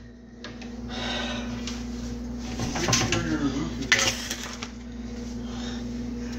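Kitchen clatter at a toaster oven: a few light metal clicks and knocks, the sharpest about four seconds in, over a steady low hum.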